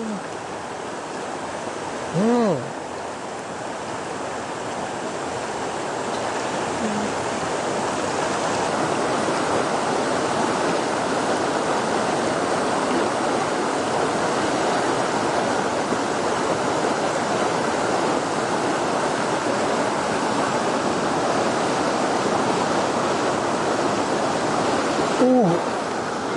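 Shallow river running over stones, a steady rush of water that grows a little louder after about six seconds. A man's brief hum about two seconds in.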